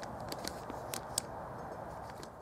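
Clear plastic zip bag crinkling faintly as an aluminum part is handled inside it: a few small, sharp crackles over a low steady hiss.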